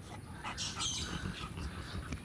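A dog giving a brief, faint high whine.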